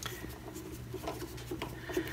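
A screwdriver turning the bottom screw of a submersible pump's control box to open it: faint, irregular scratching and small clicks.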